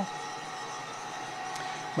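Gas-fired coffee roaster running steadily mid-roast, just past dry end with the gas turned down to half a kPa: an even hiss and rumble of the burner and drum.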